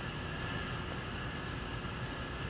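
Steady hiss of oxygen gas flowing through a corrugated plastic tube into a glass bowl.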